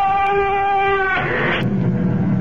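Sound-effect creaking door: a long, wavering hinge creak that gives way about a second in to a short scrape and a sharp knock as the door shuts.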